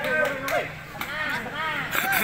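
Several voices calling and shouting over one another, with sharp smacks of a volleyball being hit: two close together near the start and one near the end.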